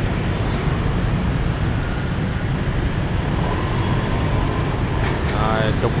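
Steady low rumble of dense motorbike and car traffic crossing a busy city intersection, an unbroken wash of engine and tyre noise with no single vehicle standing out.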